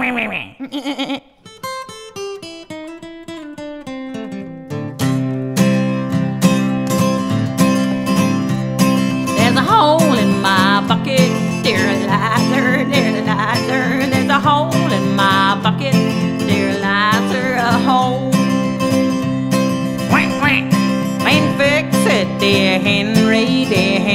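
Country-style instrumental introduction: a plucked acoustic guitar plays single notes alone, then about five seconds in a full band joins with bass and a steady beat, and a wavering lead melody comes in about ten seconds in.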